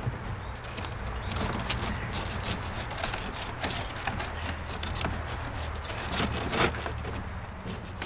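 Metal hive tool scraping and tapping a plastic propolis trap held over a plastic tote, quick irregular clicks and scrapes as cold, brittle propolis cracks off the grid.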